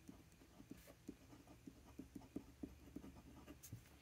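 Faint, irregular scratching of a pen nib on a paper swatch card as a word is written, several small strokes a second.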